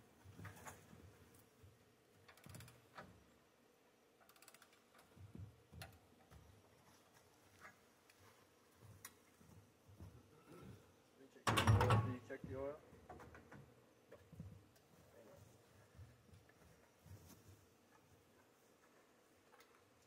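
Scattered faint clicks and knocks from handling a bandsaw mill's metal parts, with one loud thump and a short rattle a little past halfway through.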